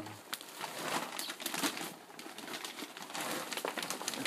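Plastic bags crinkling and rustling as they are handled, an irregular run of crackles.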